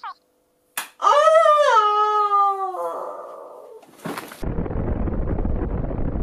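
A woman's long drawn-out "Ooo!" falling slowly in pitch, then, about four seconds in, a nuclear-explosion sound effect: a loud, steady, deep rumbling noise.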